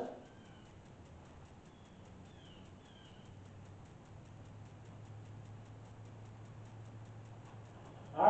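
Quiet background with a faint low hum that becomes steadier and slightly louder about three seconds in, and a few faint, short bird chirps about two to three seconds in.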